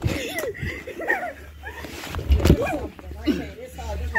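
Boys' voices shouting and calling out without clear words. Low rumbling handling noise on the phone's microphone comes in around halfway, with a knock about two and a half seconds in.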